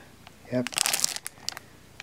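Clear plastic packaging on a pin set card crinkling as the card is handled and flipped over: a quick cluster of crackly rustles lasting about a second.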